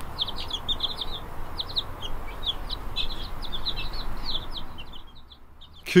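A brood of young Paduaner chicks peeping: many short, high peeps, several a second, that thin out and stop near the end.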